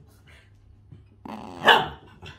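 A dog barks once, a loud, sharp bark about a second and a half in.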